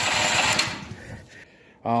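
Firman dual-fuel portable generator engine cranking over without catching, stopping about half a second in. It turns over but won't fire, which the owner takes for a fuel problem rather than a spark problem.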